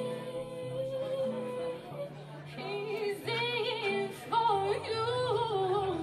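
A woman singing with acoustic guitar accompaniment: she holds one long note for about two seconds, then sings a run of ornamented phrases with bends in pitch.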